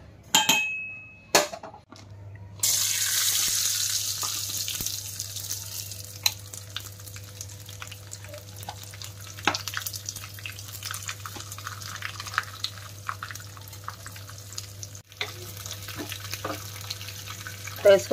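Chopped dry fruits (cashews, almonds, pistachios, charoli) sizzling in hot ghee in a small frying pan, with a steel spoon stirring and scraping through them. The sizzle starts suddenly a few seconds in, loudest at first, then settles to a steadier, quieter hiss. Just before it, a spoon clinks against a steel pot with a short ringing tone.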